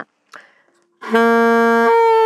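Alto saxophone holding a steady first-octave D, then jumping up an octave to second-octave D just before the end, as the octave key is pressed with the left thumb. A short breath is heard before the note starts about a second in.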